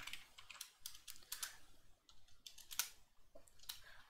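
Keystrokes on a computer keyboard: about eight faint, scattered key clicks as a short command is typed and entered.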